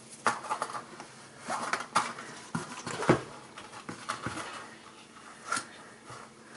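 A coil of 14-gauge aluminum craft wire being handled and pulled loose by hand: scattered light clicks and rustles as the loops shift against each other.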